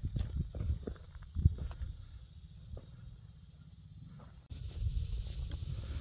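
Irregular footsteps on loose dirt and stones, with wind rumbling on the microphone. About four and a half seconds in, the sound cuts abruptly to a steadier wind rumble.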